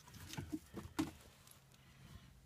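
Clothes being dropped into a top-loading washing machine tub: faint fabric rustling with a few soft thumps in the first second, the sharpest about a second in.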